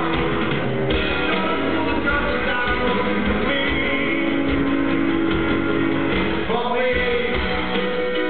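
Live band music: grand piano with bass and drums, and a man singing over it.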